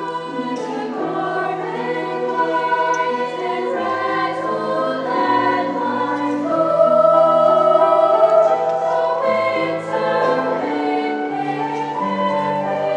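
Treble choir of young women singing sustained chords, with lower instrumental notes held underneath. The sound swells louder a little past the middle.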